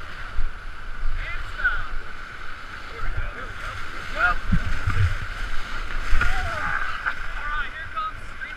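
Whitewater rapids rushing and splashing against an inflatable raft, heard through an action camera's housing, with uneven low thumps of wind and water buffeting the microphone. A few short yells rise over the water noise.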